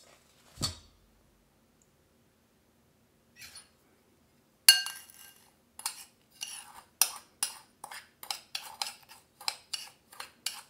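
A utensil clinking and scraping against a mixing bowl as softened butter and sugar are mixed together. A single knock comes under a second in and a sharp ringing clink a little before halfway, then steady mixing strokes follow at about three a second.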